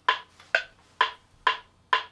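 Metronome clicking at 130 beats a minute: five even, identical clicks a little under half a second apart.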